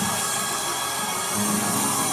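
Church band music: sustained keyboard chords held steady over a haze of congregation noise, with a new chord coming in about halfway through.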